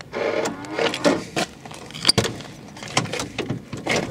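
A van's front door being opened and someone climbing into the cab: rustling and knocks, with one sharp slam about two seconds in as the door shuts, and a few clicks near the end.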